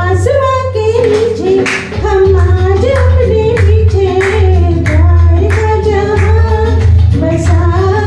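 A woman singing a Hindi film song into a handheld microphone over a recorded backing track with a steady beat and bass.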